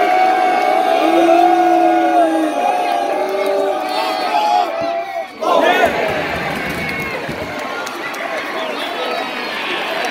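Football crowd chanting in sustained, sung voices. It breaks off about five seconds in and erupts into a roar of cheering as the penalty is taken and goes into the net, then the cheering slowly fades.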